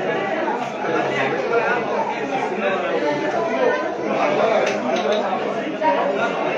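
Background chatter of many people talking at once, a steady babble of overlapping voices with no single voice standing out.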